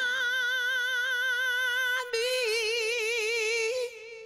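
A woman's solo singing voice, unaccompanied, holding a long note with vibrato. It breaks about two seconds in, then holds a second note with wider vibrato that fades out just before the end.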